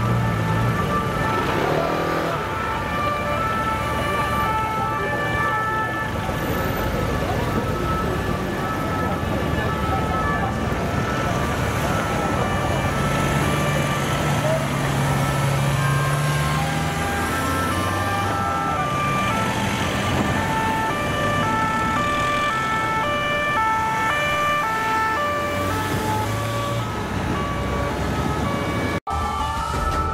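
Several French two-tone police sirens sound at once, each stepping back and forth between a high and a low note, their patterns overlapping over steady city traffic noise. The sound cuts out briefly near the end.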